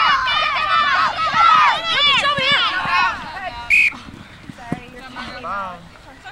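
Several high-pitched women's voices shouting and cheering over one another as a player breaks away and runs in a try. A single short whistle blast from the referee comes about four seconds in, followed by a few quieter calls.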